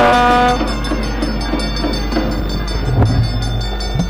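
A priest's drawn-out chanted note ends about half a second in. After it come a steady low hum and background noise, with a couple of soft knocks.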